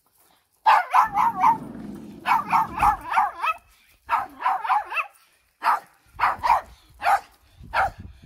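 Small dog barking in quick runs of sharp yaps: several clusters of three to five barks with short gaps between them, thinning to single barks near the end.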